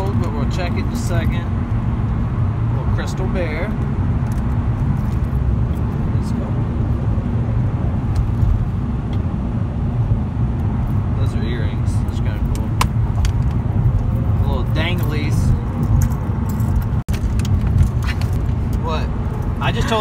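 Steady road and engine rumble inside a moving car's cabin, with metal jewelry chains and rings clinking now and then as they are picked through in a wooden jewelry box.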